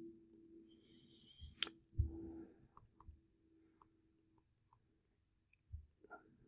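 Faint, scattered clicks and taps of a stylus on a drawing tablet while shading and handwriting, over a faint steady hum.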